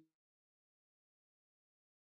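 Near silence: the sound track is completely empty, with not even room tone.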